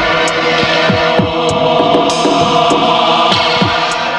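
Tense film background score: a sustained droning chord over a low throbbing pulse, about two thuds a second that each drop in pitch like a heartbeat, with faint ticks on top.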